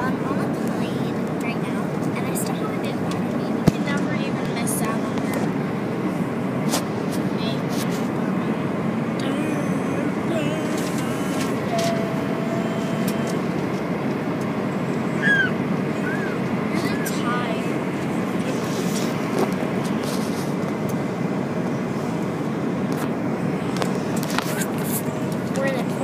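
Steady airliner cabin noise at cruise: the even rumble of engines and airflow heard from inside the cabin, with a sharp click about four seconds in.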